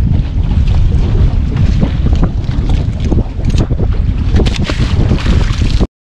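Wind buffeting the camera's microphone out on open water, a heavy, rumbling noise throughout, with a scatter of sharp knocks and clicks in the second half; the sound cuts off abruptly just before the end.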